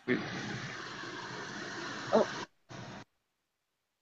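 Steady hissing background noise coming over a remote caller's call audio, which is cut off above the treble, with a brief "oh" from the caller about two seconds in. The line cuts out abruptly, returns for a moment, then drops to dead silence.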